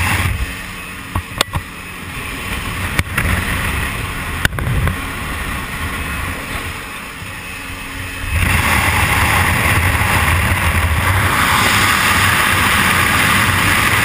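Aircraft engine and slipstream wind rushing past the open door of a jump plane. It is somewhat quieter for the first several seconds, with a few sharp knocks. From about eight seconds in it becomes a loud steady rush of wind as the jumper moves into the airflow at the door to exit.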